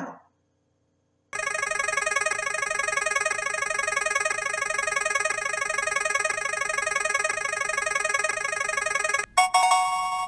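Edited-in electronic sound effect for a random pick: a fast-repeating, ringing jingle starts about a second in and runs steadily for about eight seconds. It cuts off suddenly and gives way to a few short, bright chimes as the pick lands.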